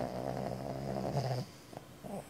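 Sleeping pig snoring: one long, steady, pitched snore lasting about a second and a half, followed by a short faint snuffle near the end.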